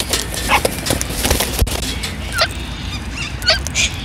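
Short, scattered squawks and calls from a flock of cockatoos and little corellas at close range, with a flurry of wingbeats as a bird takes off near the start.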